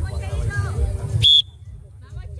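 Voices, then a short, shrill whistle blast a little over a second in, the loudest sound, which cuts off suddenly.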